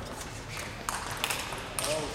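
Table tennis ball struck by bats and bouncing on the table in a fast rally: a few sharp pocks in quick succession in the second half.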